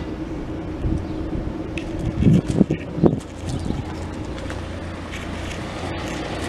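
Tractor engine idling steadily, with wind buffeting the microphone in a few louder gusts about two to three seconds in.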